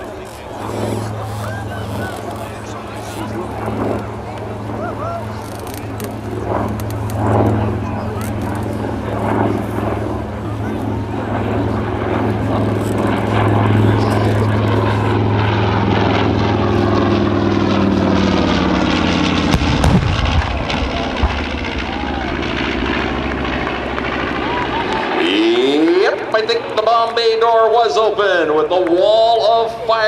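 North American B-25 Mitchell's twin Wright R-2600 radial engines droning steadily as it passes on a bombing run with its bomb bay open, the pitch falling as it goes by. About twenty seconds in there is a sharp crack and a low rumble, the pyrotechnic 'bomb' going off, and the engine sound falls away about five seconds later.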